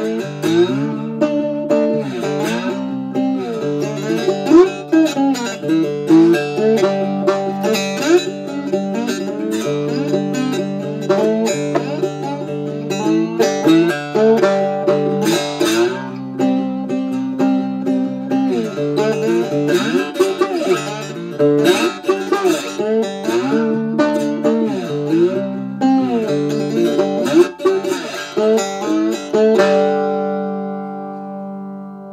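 Homemade cigar box guitar played plugged into an amplifier: a continuous run of plucked riffs with notes sliding up and down in pitch.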